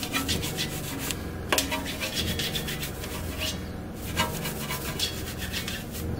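Wheel brush scrubbing the spokes of an alloy wheel: quick back-and-forth rubbing strokes, broken by brief pauses about a second in and near four seconds.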